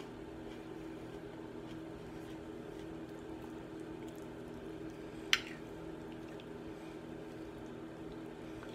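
Eating from a plate with a metal spoon: quiet wet chewing and small spoon-on-plate taps, with one sharp clink of the spoon on the ceramic plate a little past five seconds in. A steady low hum sits underneath.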